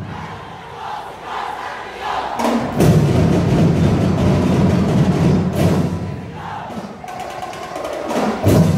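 Sinulog drum ensemble and a group of performers shouting a chant together. The chant carries the quieter opening, the drums come in heavily about three seconds in, and they ease off again near the end.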